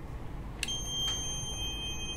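Planmeca ProMax X-ray unit's exposure tone: a steady high-pitched beep that starts a little over half a second in and holds without a break, with a second, fainter tone joining about a second in. It signals that the X-ray exposure is under way while the exposure button is held down.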